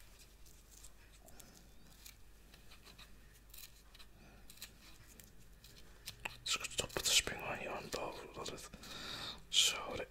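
Small scissors snipping a spring onion stalk, faint crisp snips scattered through the first part. From about six and a half seconds in, close whispering becomes the louder sound over the snipping.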